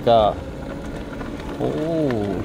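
Steady running and rolling noise of a small vehicle moving along a dirt road, under a man's brief words at the start and near the end.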